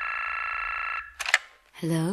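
A telephone tone sounds steadily for about a second and cuts off. A short click follows, like a receiver being picked up, and near the end a voice answers with one short word.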